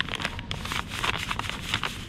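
A packaged bag of ground coffee crinkling and rustling as it is pulled off a shelf and handled, a dense run of irregular crackles.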